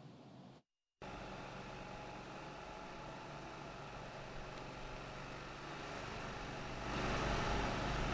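Steady engine and traffic noise from vehicles, starting after a brief cut to silence and growing louder about seven seconds in.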